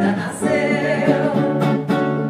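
Live bossa nova: a woman's voice finishes a sung phrase just as it begins, then an archtop guitar plays chords on its own.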